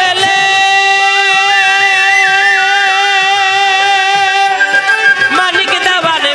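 Live Bengali baul folk song: a long note held for about four and a half seconds over regular hand-drum strokes, with a wavering melodic line above it. The melody moves on again near the end.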